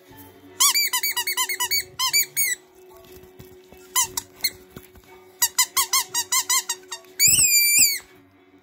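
Squeaky plush dog toy squeaked as a dog bites on it, in quick runs of short squeaks. There is a run in the first couple of seconds, one squeak about four seconds in and another run near six seconds, then one long drawn-out squeak near the end.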